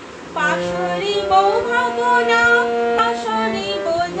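Harmonium playing held reedy notes under a voice singing a Rabindra Sangeet melody. The singing comes in about a third of a second in.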